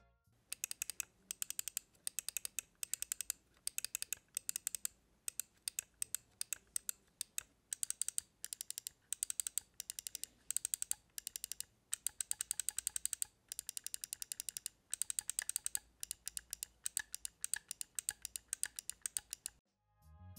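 Side buttons of a LAMZU Maya gaming mouse clicked rapidly in short bursts of several sharp clicks, with brief pauses between bursts. The buttons have slight pre- and post-travel and some rattle under active clicking.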